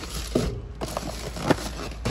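Cardboard snack boxes and black plastic trash bags rustling and knocking as boxes are handled and lifted out of a dumpster, with a few short knocks, the sharpest about a second and a half in.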